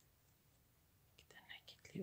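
Near silence: room tone, then faint soft whispered speech begins near the end.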